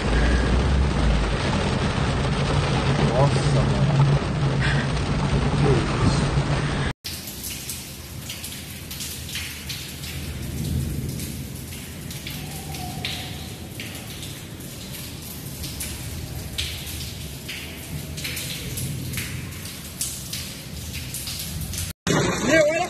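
Heavy storm rain, loud and even, with a steady low hum beneath it, heard from inside a vehicle. About seven seconds in it cuts abruptly to quieter rain with scattered sharp taps.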